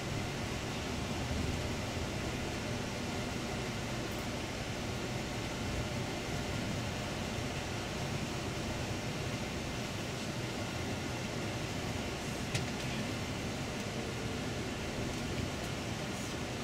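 Steady cabin noise of a Setra coach driving slowly: engine and road noise heard from inside the bus. A single short click about three-quarters of the way through.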